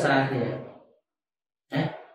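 Only speech: a man talking, his voice trailing off about a second in, then a short silence and one brief syllable near the end.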